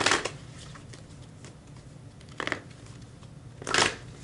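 A deck of tarot cards being shuffled by hand: three short bursts of cards slapping and rustling together, near the start, about two and a half seconds in and just before the end, with faint card ticks between.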